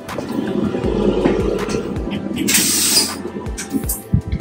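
A train's accessible toilet flushing: a rushing rumble lasting about three seconds, with a sharp hiss about two and a half seconds in.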